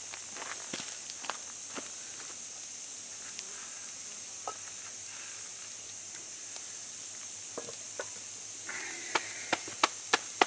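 Wood campfire crackling, with scattered sharp pops over a steady high hiss. In the last second or so come a few louder sharp knocks as the coal-covered cast-iron lid is set back on the Dutch oven.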